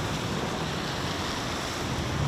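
Water jet from a garden-style hose spraying onto brick paving: a steady rush of spray and splashing.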